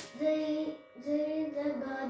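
A boy singing a Carnatic melody unaccompanied, in two held phrases with a short break about a second in. A sharp slap right at the start as he marks the tala beat with his hand on his thigh.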